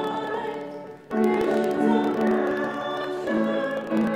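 Voices singing a hymn in sustained notes, with a brief break between phrases about a second in before the next line begins.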